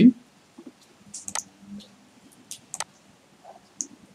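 About five computer mouse button clicks, sharp and irregularly spaced.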